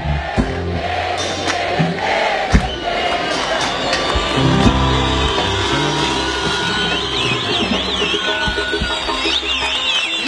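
Live band music playing on while a large concert crowd cheers, with high wavering calls rising above the crowd in the second half.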